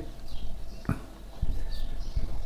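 Marker pen writing on a whiteboard: faint scratchy strokes with a couple of light ticks, one about a second in and a weaker one soon after.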